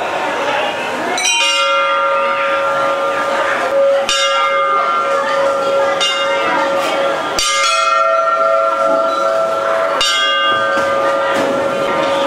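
Hindu temple bells rung by hand: about four strikes roughly three seconds apart, each left ringing with a long, steady tone, over the murmur of a crowd.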